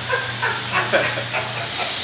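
Short, indistinct bits of voice over a steady low hum.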